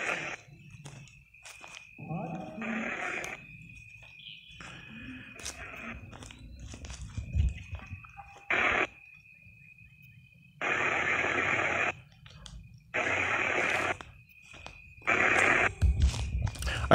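Ghost-hunting spirit box sweeping: blocks of static and chopped, radio-like fragments that switch on and off abruptly, several times, over a faint steady high tone.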